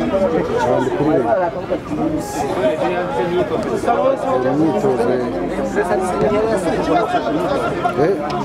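Several people talking at once in steady, overlapping chatter.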